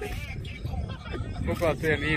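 A man's voice in the second half, over a steady low rumble of wind on the microphone.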